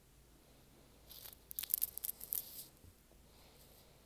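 A faint scratchy rustling noise in a cluster of short bursts, starting about a second in and lasting under two seconds, over quiet room tone.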